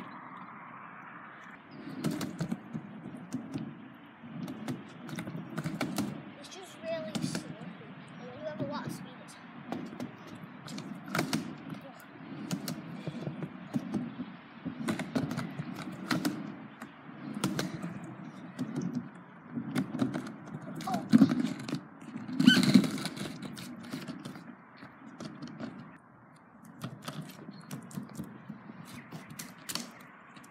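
Skateboard wheels rolling over wet concrete and a quarter-pipe ramp in repeated rumbling passes, with sharp clacks and knocks of the board. The loudest knocks come about two-thirds of the way through.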